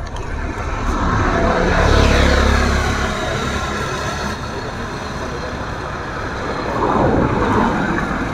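Motor vehicles passing close by on a road. One swells to a peak about two seconds in and fades with a falling pitch, and a car approaches and passes near the end.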